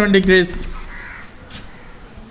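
A man's voice drawing out the end of a word, falling in pitch and trailing off about half a second in, followed by quiet with a brief faint scratch and tick of chalk on a blackboard as the answer is underlined.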